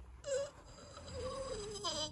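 A person's faint, drawn-out pained moan, wavering and slowly falling in pitch for about a second and a half.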